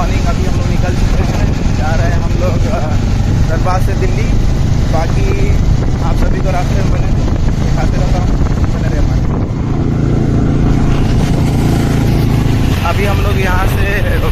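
Motorcycle engine running steadily while the bike is ridden along a road, with wind noise on the microphone.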